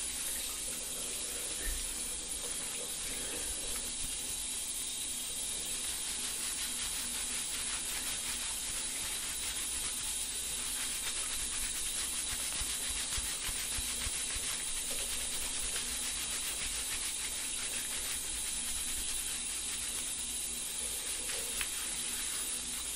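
Water running steadily from a shower, a constant spray with no change in level.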